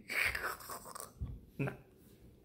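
A man's soft, breathy laugh through a wide grin, followed near the end by a short spoken "nah".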